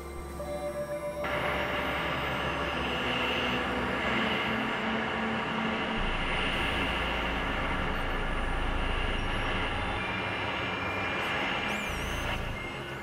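Experimental electronic drone and noise music from synthesizers. A thin layer of held tones gives way about a second in to a dense wash of noise with steady tones beneath it, and the low drone changes about halfway through.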